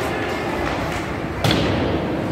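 A single sharp thud about one and a half seconds in, from an impact in ice hockey play, ringing briefly in the arena, over a background murmur of voices.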